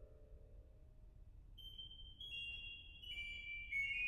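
Organ music: a held chord dies away, then high, piercing held notes enter one after another, each a step lower, stacking into a sustained high cluster.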